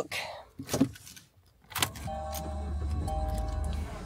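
Ignition key turned in a 2020 Kia Cerato: a click a little under two seconds in, then the four-cylinder petrol engine starts and idles steadily. The seatbelt warning beep sounds over the idle because the driver's belt is not fastened.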